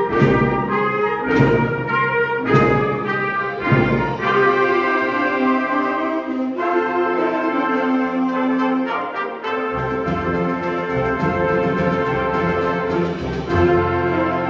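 High school concert band playing a Christmas carol medley, brass to the fore. Accented full-band chords about once a second for the first four seconds, then held chords under a moving melody, with the low brass coming back in about ten seconds in.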